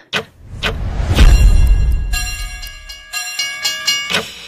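Trailer sound effects: a few sharp hits, then a heavy low rumble that swells about a second in, followed by a cluster of high tones that flicker on and off in the second half.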